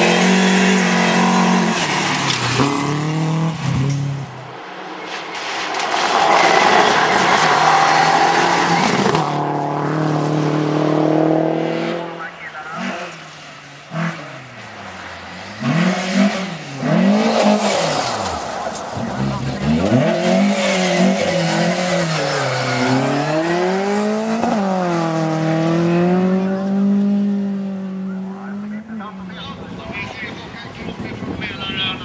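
Rally cars driven hard on gravel stages, one after another. Their engines hold high revs through the first several seconds, then rise and fall again and again with gear changes and throttle lifts through the bends.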